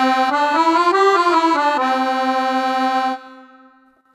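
Roland FR-4x digital accordion playing a short phrase on one of its factory accordion sets, a sampled reed sound. The notes step up and back down, then one note is held for over a second before it stops about three seconds in and fades away.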